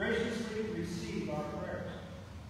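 A man's voice speaking.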